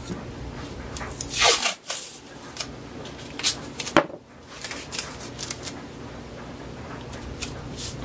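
Painter's tape ripped off the roll in one long rasp about a second in, then sharp crackles and snaps as the strip is torn and handled, with light rustling as it is pressed around stacked plywood blanks.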